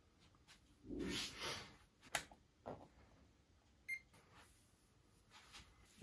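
Quiet handling of cables and connectors, with a sharp click about two seconds in. About four seconds in comes a single very short, high electronic beep from the LiPo charger.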